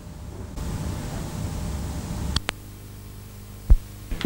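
Hiss, hum and low rumble on an old 1970s television soundtrack, with a sharp click a little past halfway and a short, loud low thump near the end.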